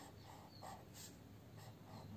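Near silence, with a few faint scratches of a felt-tip pen drawing lines on paper.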